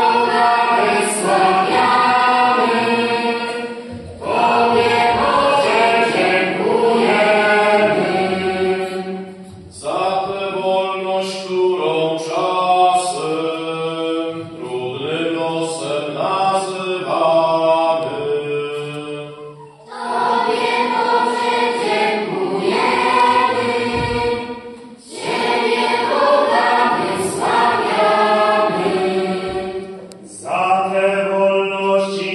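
Children's choir singing in phrases of held notes, with short breaks between phrases every few seconds.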